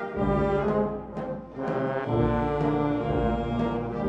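Band playing a slow funeral march, with long sustained brass chords. The music thins briefly about a second in, then deep bass notes come in under the brass.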